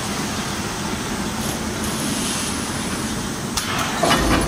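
GI coil cut-to-length line running: steady mechanical noise with a low hum from the feed rollers and drives, and a sharp click near the end.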